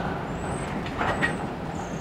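Freight train cars rolling slowly along the rails while reversing, a steady low rumble of wheels on track. A brief louder burst comes about a second in.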